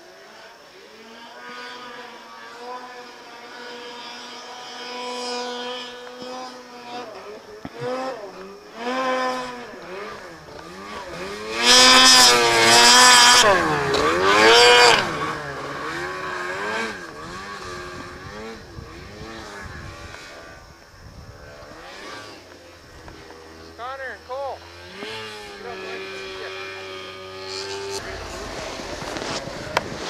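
Snowmobile engine working hard in deep powder snow, its pitch rising and falling as the throttle is worked. It holds a steady tone at first, then revs up and down repeatedly, loudest for a few seconds about halfway through.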